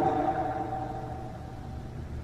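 Pause in a man's speech: the echo of his last words fades away over about a second and a half, leaving a steady low hum.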